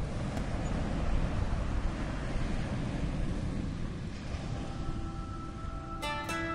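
Sea waves and wind: a steady rushing noise heaviest in the low end. Faint held musical notes fade in during the last second or two.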